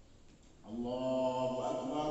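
Quiet room tone, then about two-thirds of a second in an imam's voice starts a chanted prayer recitation over the mosque sound system, a long held melodic note.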